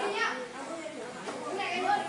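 Children's voices talking, loudest at the start and again near the end.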